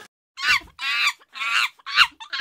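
A run of short, pitched, bird-like calls, about four in quick succession, beginning a moment after a brief silence.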